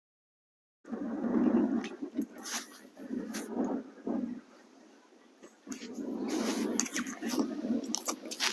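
Wind buffeting the microphone in uneven gusts, starting about a second in and dropping away briefly around the middle before picking up again.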